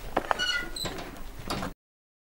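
A metal yard gate squeaking on its hinges and clicking as it swings, then the sound cuts off abruptly shortly before the end.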